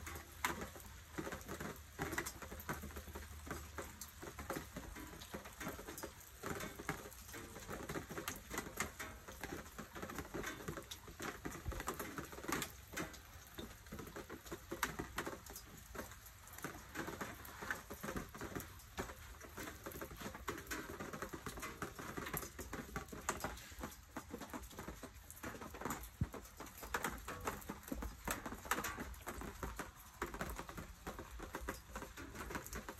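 Heavy storm rain pattering densely and unevenly on the hard surfaces around, with many sharp ticks like hail hitting.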